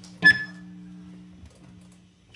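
A single sharp struck note from the band's instruments, a bright ringing tone over a lower held chord, fading out by about a second and a half.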